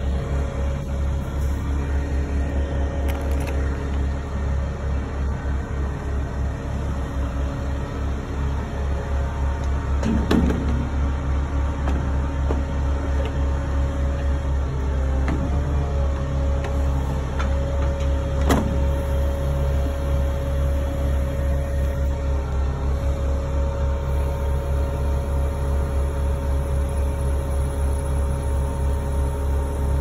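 Bucket truck's engine running steadily with a deep rumble, under a steady whine from the truck's aerial lift. A couple of sharp knocks sound about ten seconds in and again near eighteen seconds.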